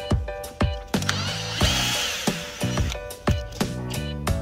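Background music with a steady beat. About a second in, a cordless drill runs for a second or so with a whine, driving a screw into the tire.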